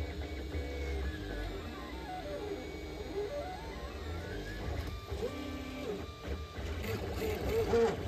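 A 3D printer's stepper motors whine in tones that glide up and down in pitch as the print head speeds up, slows and changes direction. Underneath runs a steady low hum.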